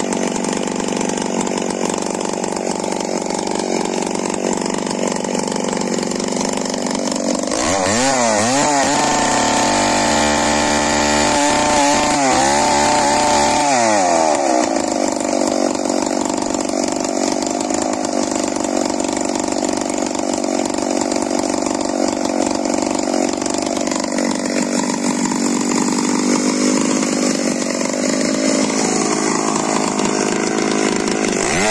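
Echo Godzilla 1201 chainsaw running hard while ripping lengthwise through a thick log. The engine note is steady, apart from a stretch about a quarter of the way in where its pitch dips and rises over and over for several seconds.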